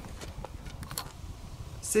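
Faint handling sounds of an RC helicopter being lifted out of its carrying case and set down: a few light clicks and knocks over a low rumble.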